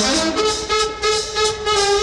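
Jazz band's brass section playing held chords over a steady beat.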